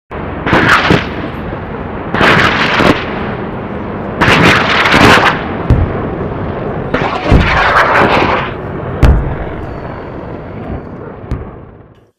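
A series of five loud, explosion-like booming bursts, roughly two seconds apart, over a continuous rushing noise that fades away near the end.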